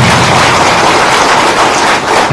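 Crowd applauding: loud, dense, steady clapping that eases off slightly near the end.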